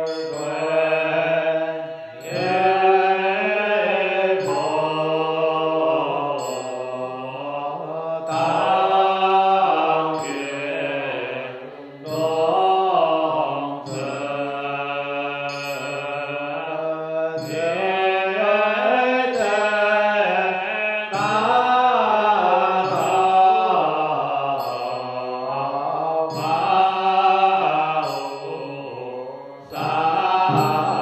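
Chinese Buddhist liturgical chanting by a group in unison: long sustained melodic lines that glide slowly in pitch, with brief breaks between phrases. A light regular tap, about once a second, keeps time under the voices.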